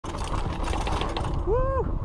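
Magicycle 52V fat-tire cruiser e-bike rolling fast over a dirt trail: a steady clatter and rattle from the bike over the bumps, with a low rumble. Near the end the rider lets out one short rising-and-falling exclamation.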